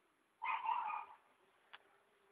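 Macaw giving a single call of well under a second, about half a second in, followed near the end by a short click.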